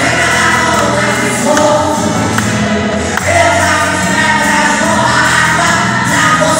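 A gospel worship song sung through a microphone by a man, with other voices joining in and musical accompaniment, in steady sustained lines.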